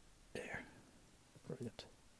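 Quiet speech: a short breathy whisper about a third of a second in, then a soft spoken "yeah", with a small click just after it.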